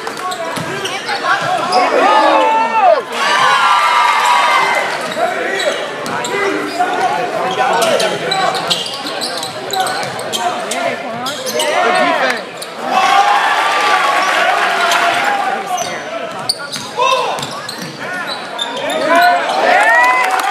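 Live basketball game sound in an echoing gym: a basketball bouncing on the hardwood floor, with players' and spectators' voices calling out.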